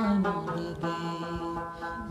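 Man singing a Pashto tappa in one long held note that dips near the end, over plucked rabab strings.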